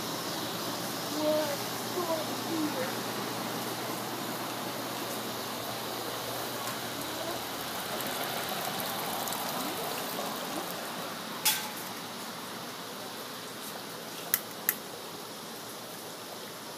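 Steady outdoor background hiss with faint voices in the first few seconds. There is one sharp click about two-thirds of the way in, and two quick clicks near the end.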